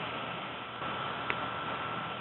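Open telephone conference line carrying a steady hiss and hum, with a faint steady high whine and one soft click about a second in.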